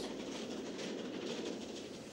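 Steam train hauling passenger coaches, heard running along the line as a steady noise that fades slightly toward the end.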